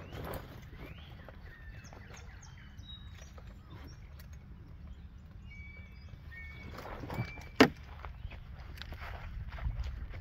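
Outdoor background with a steady low rumble and a few short, thin bird chirps in the middle. A single sharp knock about seven and a half seconds in is the loudest sound.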